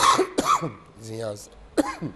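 A man coughing and clearing his throat a few times, loudest right at the start.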